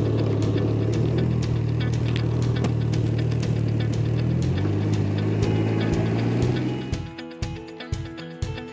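Can-Am Ryker 900's Rotax three-cylinder engine running steadily at low revs as the trike rolls off slowly, its note shifting slightly about four and a half seconds in. Near the end the engine fades out and guitar music takes over.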